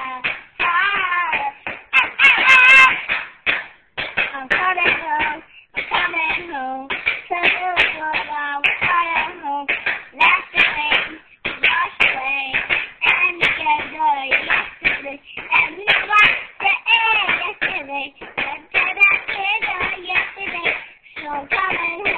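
A young child's high voice singing unaccompanied, loud and close, in phrases broken by short breaths.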